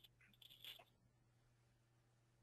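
Near silence: faint room tone with a low steady hum and a few faint small clicks or rustles in the first second.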